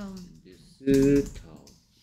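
Typing on a computer keyboard, a run of light key clicks, with a short spoken sound about a second in.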